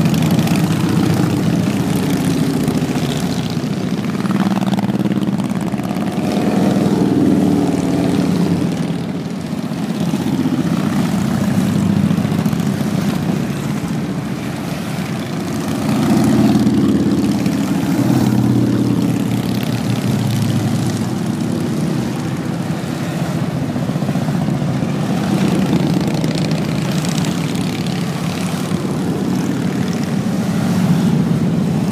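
A long line of motorcycles riding past in procession, their engines making a continuous drone that swells and fades as groups of bikes go by, loudest about a third of the way in and again around the middle.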